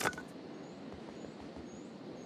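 Quiet beach ambience: a soft, steady hush with about three faint, short, high bird chirps. A short sharp click comes right at the start.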